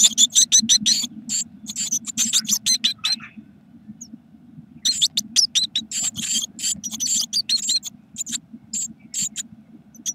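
Blue tit nestlings in a nest box giving rapid, high-pitched begging calls, several a second; the chorus stops for about a second and a half, starts again, and thins out towards the end.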